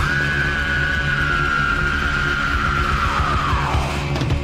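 Heavy metal song from a 1983 demo recording: one long, high held note slides downward near the end, over the full band.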